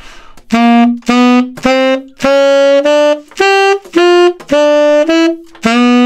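Tenor saxophone playing a slow rock-and-roll horn line in separate, detached notes: a stepwise climb of short notes, a leap up to the highest note about halfway through, then back down.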